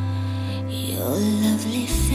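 A recorded song with held low keyboard chords; about a second in, a female voice slides up into a low sung note, A3, and holds it briefly.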